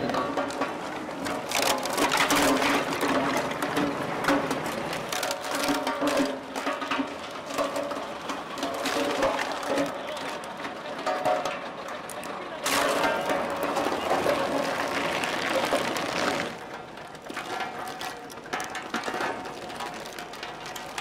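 Road roller crushing ivory and bones on a tarp, with many sharp cracks and snaps, over the voices of a watching crowd.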